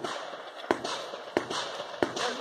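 Gunfire: three sharp shots at an even pace, about two-thirds of a second apart, the last right at the end.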